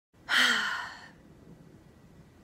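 A woman's single heavy, breathy sigh, starting sharply and tailing off over under a second, as if weary.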